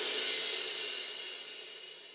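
The end of a funky disco house track: after the last drum hit the music stops, and a crash cymbal rings on alone, fading steadily away.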